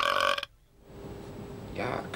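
A long, drawn-out burp that cuts off abruptly about half a second in.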